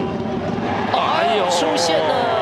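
Baseball TV broadcast: a man's commentary voice starts about a second in, over a steady background of ballpark noise.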